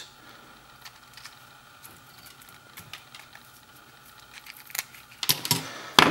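Faint small clicks and rattles of a spool of desoldering wick being handled on a workbench, with a denser, louder cluster of clicks about five seconds in.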